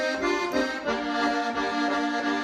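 Bayan, a Russian chromatic button accordion, playing a Russian folk tune: reedy held chords under a melody that steps from note to note, the lower notes shifting about a second in.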